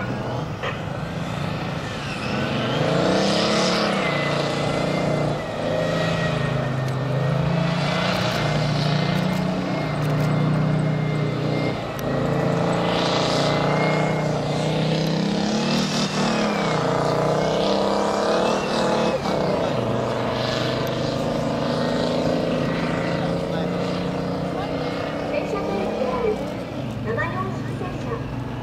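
Type 87 self-propelled anti-aircraft gun's diesel engine running as the tracked vehicle drives, its revs rising and falling again and again, with a thin high whine wavering above it.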